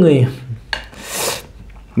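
A click, then a short rasping scrape about halfway through, as rice and curry are scooped off a steel plate.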